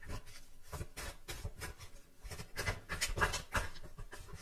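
Tarot cards being shuffled by hand: a run of soft, irregular swishing strokes, several a second.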